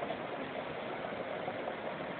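Steady, even background hiss outdoors, with no distinct events.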